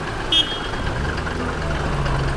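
Street traffic and vehicle engine noise around a taxi, a steady rumble with a short high beep about a third of a second in and a low engine hum in the second half.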